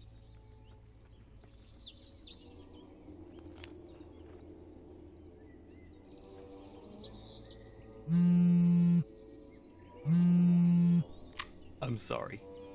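Birds chirping, then a phone's buzzing ring tone sounding twice, each about a second long with a second's gap, much louder than the birds.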